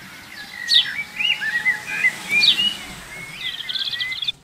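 Several birds chirping and calling in short swooping whistles, over a steady low background noise; the sound cuts off abruptly near the end.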